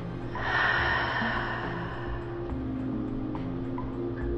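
A person's slow exhale, a long airy breath lasting about two seconds, over soft background music with sustained tones.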